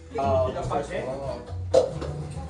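Party voices over background music with guitar and a bass line, with a shout early on. Near the end comes one sharp, loud hit.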